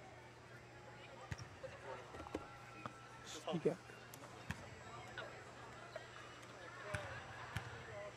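A basketball bouncing a few times on a hardwood gym floor, single sharp thuds spaced out through a quiet stretch, the last two close together near the end as the free-throw shooter gets the ball.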